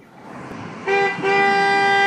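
Cartoon vehicle horn sound effect: a short beep followed by a longer, steady beep at one pitch.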